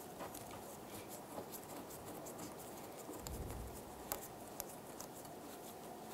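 Faint handling noises of a bolt being started into the fuel tank strap: a few scattered light metallic clicks, with a brief low hum a little over three seconds in.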